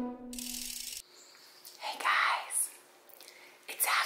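The last note of a vibraphone-like intro jingle, overlaid with a short burst of static hiss that cuts off sharply about a second in. Then faint breathy, whisper-like voice sounds.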